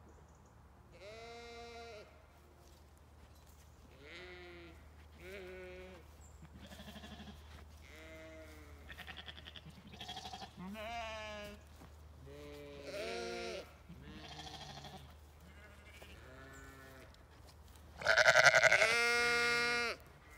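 Zwartbles sheep bleating, about a dozen calls from different animals one after another, with the loudest and longest bleat near the end.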